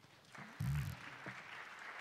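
Audience applause building up and carrying on steadily. About half a second in, a loud thump with a low rumble as a handheld microphone is set down on a table.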